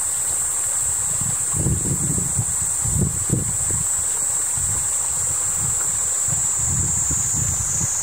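Outdoor ambience of a shallow stream running over stones, with wind buffeting the microphone in irregular low gusts and a steady high-pitched hiss.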